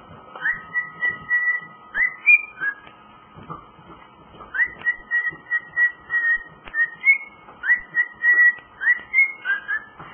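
Male cockatiel whistling a tune: a run of clear whistled notes, many starting with a quick upward sweep and some held, with a short break about three seconds in before the song picks up again.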